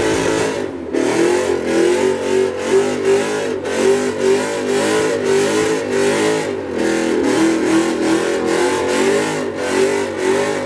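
Ford Mustang doing a burnout: the engine is held at high revs that rise and fall again and again as the rear tyres spin against the pavement.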